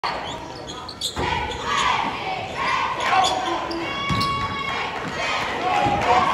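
Basketball game in a gym: a ball bouncing on the hardwood floor and short sneaker squeaks, with crowd and player voices echoing in the hall and a swell of crowd noise about a second in.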